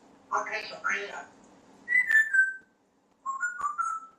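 African grey parrot making a short mumbled, speech-like sound, then whistling: one clear falling whistle about two seconds in, and a few short whistled notes near the end.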